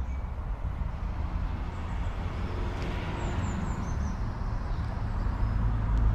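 Outdoor background noise: a steady low rumble, with a swell of hiss around the middle, and a few short, high, falling bird chirps, three of them in quick succession near the middle.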